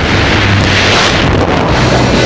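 Loud rush of wind over the camera's microphone as the tandem skydivers leave the aircraft into freefall, swelling about a second in. Music comes back underneath near the end.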